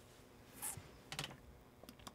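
A few faint clicks of typing on a laptop keyboard in a quiet pause.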